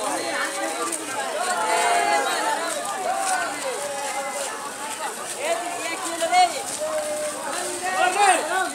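Many children's voices talking and calling out over one another, with no clear words.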